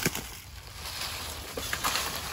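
Rustling and shuffling in dry leaf litter as someone moves and handles gear, with a sharp knock right at the start and a couple of small clicks near the end.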